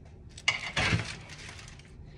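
A small knife set down with a sharp metallic clink about half a second in, followed by a brief clatter and rustle of movement.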